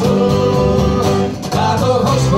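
Acoustic folk band playing live: guitars with cajon and cello, in an instrumental passage of the song.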